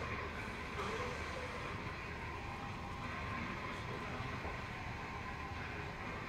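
Steady rumbling background din from the building's plumbing system, heard as a constant low rumble with a faint hum. The lecturer puts it down to water going through the system.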